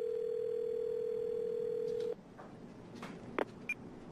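Telephone tone held steady for about two seconds, then cutting off suddenly, followed by a few clicks and a short high beep, as when a voicemail is being played back on a phone.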